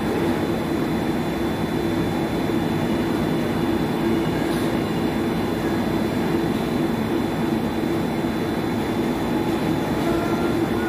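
Blown film extrusion machine running steadily while plastic film winds onto the take-up roll: a continuous mechanical hum with a low drone and a faint high whine.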